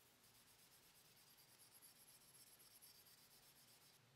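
Faint, quick rubbing strokes: a hand wiping the steel blade of a hunting knife against a paper shop towel.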